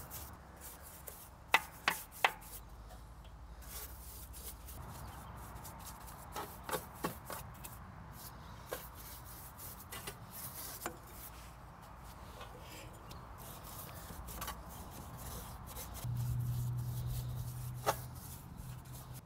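An old paintbrush scrubbing used engine oil onto the rusty steel underside of a push mower deck: a soft, steady rubbing of bristles on metal with scattered sharp taps. A low hum comes in near the end.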